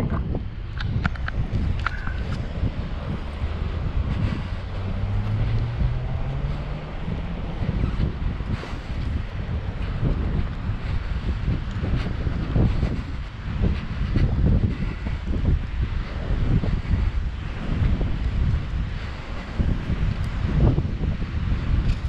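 High wind buffeting the microphone, an uneven low rumble that rises and falls with the gusts.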